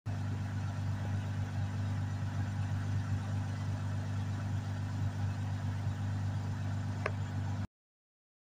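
Lexus IS250's 2.5-litre V6 idling steadily, with one faint click about seven seconds in; the sound cuts off suddenly just before the end.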